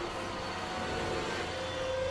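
Semi truck driving by close, a steady engine and road noise that swells slightly about a second in.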